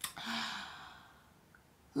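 A woman's audible sigh: one breathy exhalation that fades away over about a second.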